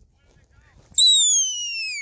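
A loud, long whistle starting suddenly about a second in and sliding steadily down in pitch: a handler's whistle command to a working herding dog.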